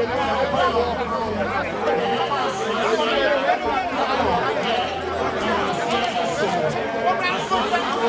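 Crowd chatter: many people talking and calling out at once, a loud, continuous babble of overlapping voices.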